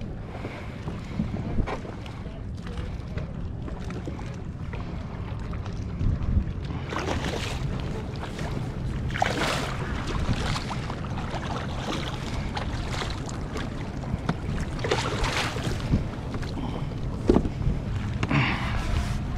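Steady wind buffeting the microphone, with several bursts of water splashing as a hooked striped bass thrashes at the surface beside the kayak.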